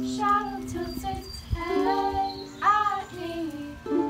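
A young girl's voice singing over a strummed ukulele accompaniment.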